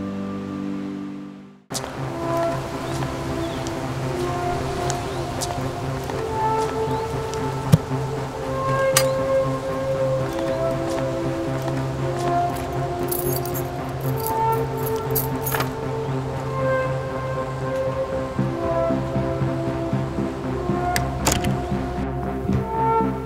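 Film score music: one track ends about a second and a half in, then a slow, mysterious-sounding piece over a steady low drone takes over. A sharp click comes about eight seconds in, and a brief run of light metallic jingling, like keys in a lock, follows past the middle.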